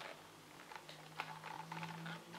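Faint light clicks and rustles of cardboard packaging being handled as a radiator is slid out of its sleeve.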